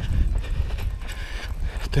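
A runner's footfalls thudding on asphalt, picked up by a camera held at arm's length while running, with wind and handling rumble on the microphone.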